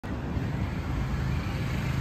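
A motor vehicle's engine running with a steady low rumble.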